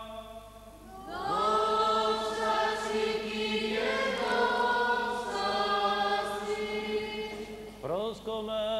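Byzantine-rite liturgical chant: men's voices singing long held notes over a steady low drone. The chant swells in with a rising slide about a second in, and a new phrase starts near the end.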